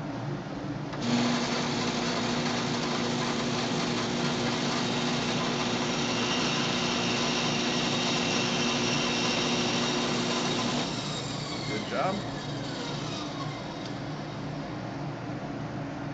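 Craftsman 12-inch band saw switched on about a second in, running with a steady hum while a small block of wood is fed through the blade, then switched off near the eleven-second mark, its pitch falling as the motor and blade coast down. A steady shop dust collector runs underneath throughout.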